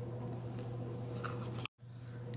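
Faint rustling and tapping of a paper sticker sheet being handled as stickers are peeled off and placed, over a steady low electrical hum. The audio cuts out completely for a moment near the end.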